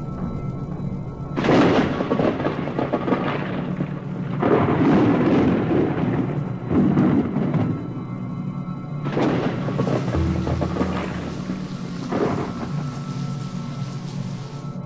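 Thunder and rain sound effects: about five loud claps of thunder, each rolling away over a second or two, over a rain hiss and a sustained, eerie music bed.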